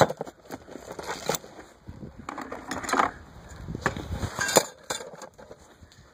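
Loose metal parts (gears, bearings and bicycle chain) clinking and shifting in a cardboard box, with plastic bags crinkling, in several irregular bursts. The sharpest clinks come right at the start and about four and a half seconds in.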